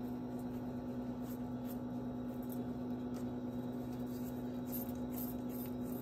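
A steady low electrical hum holds at one pitch throughout, with a few faint light ticks from the hands shaping the dough.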